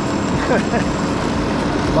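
Scooter engine running steadily while riding, with a brief laugh about half a second in.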